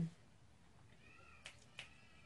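Quiet room with a faint, short wavering squeak about a second in. It is followed by two sharp clicks from the laptop's controls, about a third of a second apart.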